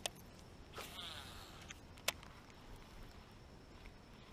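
Faint whir of a baitcasting reel about a second in, followed by a sharp click just after two seconds.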